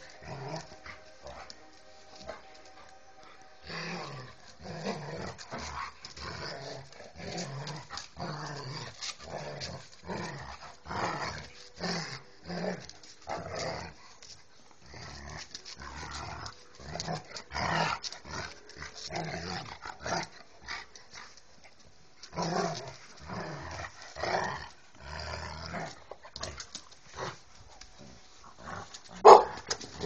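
Two husky-type dogs play-fighting, with repeated short growls and grumbles coming in quick irregular bursts; it is rough play, not a real fight. One sudden louder sound just before the end.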